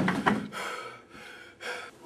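People gasping in shock: a loud gasp at the start, then about three shorter, fainter breathy gasps.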